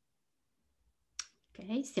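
Near silence, then a single short click a little over a second in, followed by a woman starting to speak in Italian near the end.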